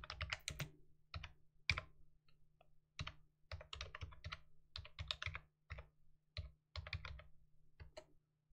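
Computer keyboard being typed on in short, irregular bursts of key clicks as a command is entered, stopping near the end.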